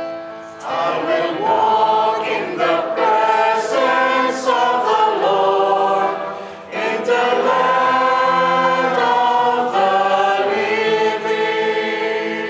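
Church choir singing the refrain of a responsorial psalm in two phrases, with a short break about six and a half seconds in, over sustained keyboard chords.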